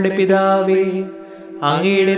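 Devotional prayer chanted on long, near-level sung notes over a steady held background tone; the voice drops away a little past the middle and comes back in near the end.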